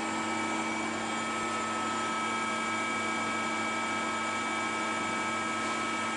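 Schiavi HFBs 50-25 hydraulic press brake running idle: a steady hum with several constant tones over even noise from its pump and motor, with no bending strokes or knocks.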